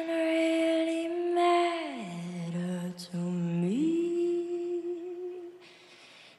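A young girl singing slow, long held notes, soft and close to a hum, sliding smoothly from one pitch to the next. The singing fades out near the end.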